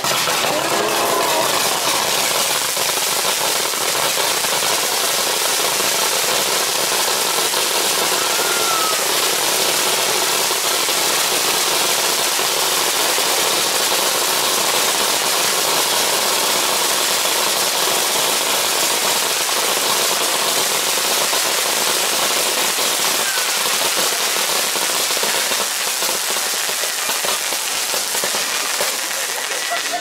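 Tezutsu hanabi, a hand-held bamboo-tube firework, spraying a fountain of sparks: a loud, steady rushing hiss that eases slightly near the end and then cuts off abruptly.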